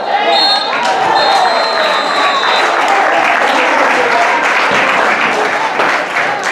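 Players and spectators shouting on a football pitch, with a high steady whistle heard in short blasts over the first couple of seconds, then a dense wash of clapping and cheering.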